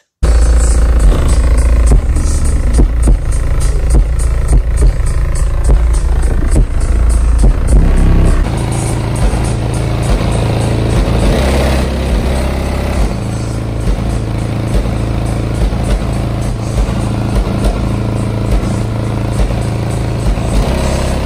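Two Sundown 18-inch subwoofers playing bass-heavy music very loud on a 16,000-watt amplifier, heard from outside the SUV. The bass cuts in suddenly right at the start. A loose trim piece on the rear hatch rattles along with the bass and sounds really bad.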